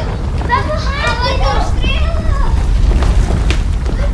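Children's excited voices over background music with a strong, steady bass.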